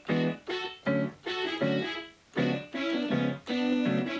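Electronic keyboard playing a short melodic line of about seven separate notes, a keyboard figure shaped after the song's vocal melody.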